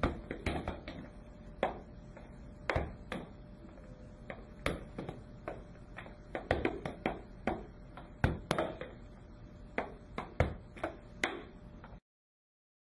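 Irregular sharp knocks and thuds, often in quick clusters: a wooden rocker board tipping and knocking against the floor as it is pushed to perturb the standing patient, mixed with a soccer ball being volleyed and caught.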